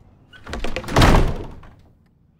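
A door slamming shut: one loud, deep thud about a second in that dies away over about half a second.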